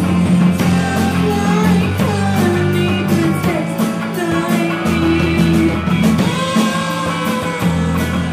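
Live rock band playing a song: a sung vocal line over electric guitars, bass guitar and a drum kit with regular drum and cymbal hits.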